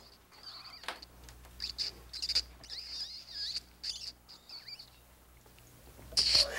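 Faint bird chirps: a scattered series of short, high calls.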